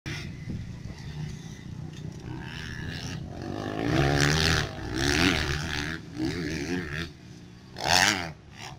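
Motocross dirt bikes running on the track, a steady drone with engine revs rising and falling in several louder passes from about four seconds in, the loudest at the very end.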